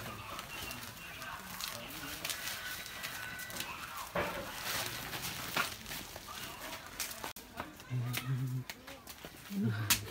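Voices of people talking among footsteps and scattered clicks and knocks; a man's low voice speaks in two short bursts near the end.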